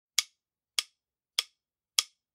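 Four sharp count-in clicks, evenly spaced at a little under two a second, marking the tempo before a rock backing track starts.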